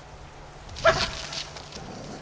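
A dog barks: one sharp, loud bark about a second in, followed by a couple of weaker ones.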